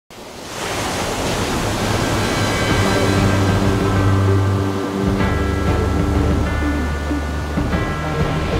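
Surf and wind noise of a stormy sea swelling up from silence. Sustained music chords over a deep bass enter about three seconds in and change chord twice.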